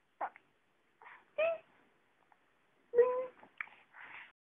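Baby cooing in several short, high-pitched vocal sounds, the loudest about three seconds in.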